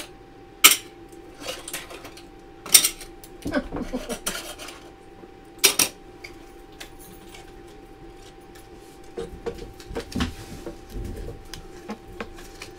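Game chips clicking and clattering as they are handled in a slotted pegboard game board. Three sharp clicks come about one, three and six seconds in, with lighter clatter between, and some low bumping near the end.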